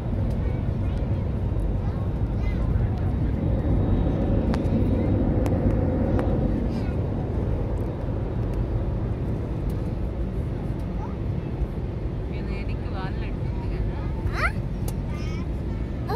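Steady low rumble of engine and airflow noise inside an airliner cabin, with faint voices in the background.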